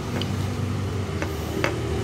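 Steady low hum of a running vehicle engine nearby, with a few light clicks as the metal starter solenoid switches are moved on the ground.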